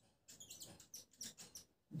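Faint squeaks of a marker pen writing on a whiteboard, a quick series of short high strokes as words are written.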